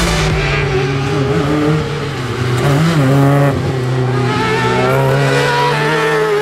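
Suzuki Swift's four-cylinder engine running at high revs under load through a slalom, the revs dipping and picking up again briefly twice as the driver lifts between turns.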